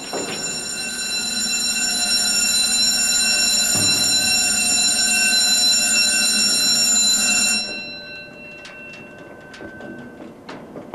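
A loud, steady warning alarm with a low mechanical hum beneath it, sounding as a heavy steel hatch in a concrete pad swings open; it cuts off abruptly about seven and a half seconds in, followed by a few metallic clanks.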